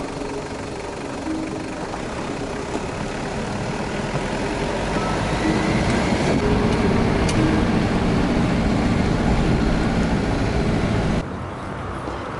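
Car driving, with engine and road noise picked up by a camera mounted outside on the hood. The noise grows gradually louder over the first half and then stops abruptly near the end.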